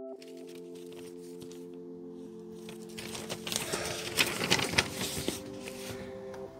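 Quiet ambient music of long held tones. From about three seconds in, sheet paper rustles and crinkles as a folded handwritten letter is handled and opened, loudest near the middle.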